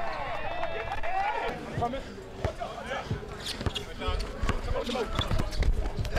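A basketball being dribbled on an outdoor hard court, a series of short bounces, among the voices of players and onlookers.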